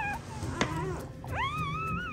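A dog whining in high, drawn-out cries that rise and then fall: a short one at the start and a longer one from about one and a half seconds in, with a sharp click between them.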